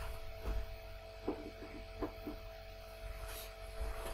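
Steady low electrical hum with two faint steady tones above it, and a few faint soft ticks scattered through it.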